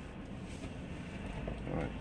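Steady low rumble inside a car cabin, growing slightly in the second half, with a faint mumbled voice just before the end.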